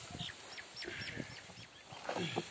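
A bird chirping in a string of short, high calls, about three a second, over a faint rustle of dry chopped fodder being stirred by hand.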